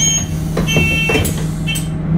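A bus engine idling with a steady low drone while short electronic beeps sound a few times at uneven intervals, with a couple of light knocks.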